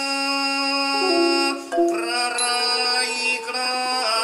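Thai classical piphat ensemble music accompanying dance, its melody moving in long held notes that change pitch a few times.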